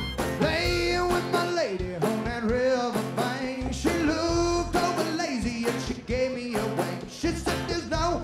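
Live band music: a male singer's voice carrying a bending, held melody over strummed acoustic guitar, with a pulsing bass and drum beat underneath.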